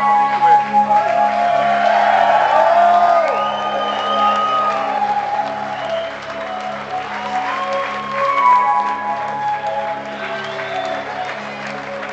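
Live band playing the slow instrumental intro of a rock song, sustained held notes over a steady low drone, with the audience cheering and whistling over it.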